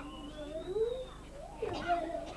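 A faint, drawn-out wavering cry whose pitch rises and falls over about a second, followed by a short sound near the end.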